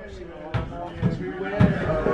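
Indistinct talk with two dull thumps, one about half a second in and another near the end.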